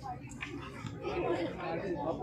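People chattering, several voices talking at once, getting louder about a second in.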